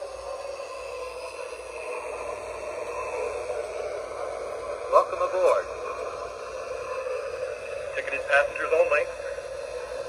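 Station sound effects from the MTH Protosound 3 sound system in an O-gauge steam locomotive, heard through its small onboard speaker: a steady background hiss with two short bursts of muffled voice chatter, about halfway through and again near the end.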